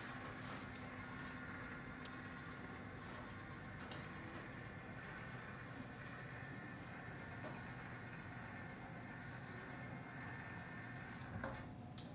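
IDEXX Quanti-Tray Sealer running with a steady low hum as it draws a sample tray through to heat-seal it, with a few faint clicks of the tray and insert being handled.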